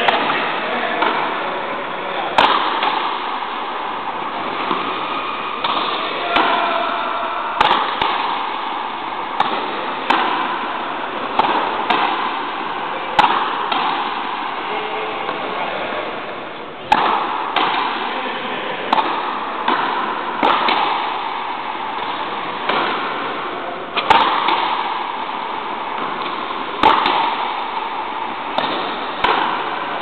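Frontenis rally: rackets striking the rubber ball and the ball smacking the front wall in sharp hits about every second, each ringing out in the hall's echo, one long, hard-fought point.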